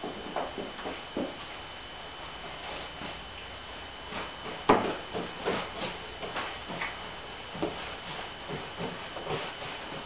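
Gloved hands handling and smoothing dry fiberglass tape along the hull seam of a wooden boat, with scattered soft rustles and brushes and one sharper click about five seconds in.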